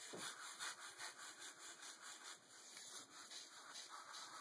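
Ballpoint pen scratching faintly across paper in quick repeated strokes as wheel ellipses and long lines are sketched.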